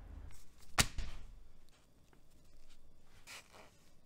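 Parts being handled on a wooden workbench: one sharp click about a second in, then quieter handling noise.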